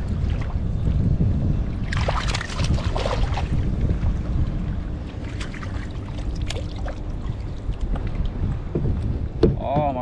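Wind rumbling on the microphone over water lapping at a kayak, with a brief hissing splash of noise about two seconds in and a few small clicks.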